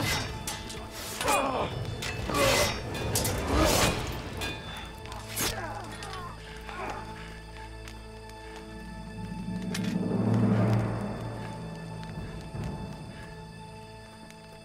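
Dramatic background score with sustained low tones, swelling about ten seconds in. Over the first five seconds or so, a rapid run of sharp hits and cries from hand-to-hand fighting plays over the music.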